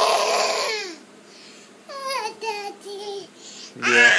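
A toddler's loud, high-pitched gleeful squeal that falls in pitch at its end, followed by a few shorter babbled vocal sounds.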